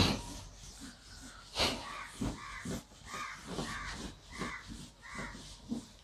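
A crow cawing repeatedly, about six short harsh caws, starting about two seconds in. A sharp knock comes right at the start, and a whiteboard eraser rubs across the board.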